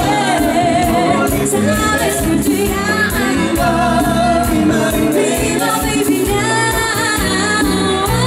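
Live dance band playing a bachata, with singing over a steady beat.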